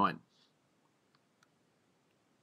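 A man's voice finishes the word "nine", then two faint, short clicks follow, about a second and a second and a half in, as from a computer pen or mouse used for on-screen writing.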